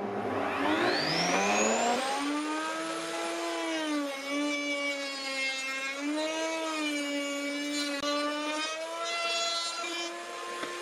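Table-mounted wood router starting up, its whine rising in pitch over about two seconds to full speed, then running steadily while the edge of a round wooden barrel head is cut against the bit, the pitch dipping and recovering slightly under the load.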